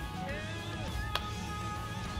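Background music, with a single sharp click a little over halfway through.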